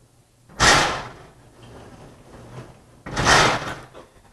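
Lecture-hall sliding blackboard panels being moved: two short, loud sliding bangs, about two and a half seconds apart.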